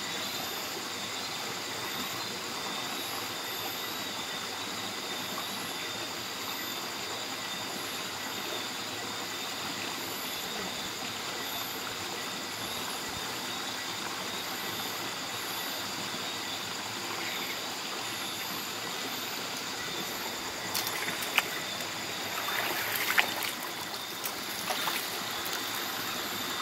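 Steady rush of flowing mineral-spring water, with a steady high-pitched trilling of night insects above it. A few sharp knocks and scuffs near the end.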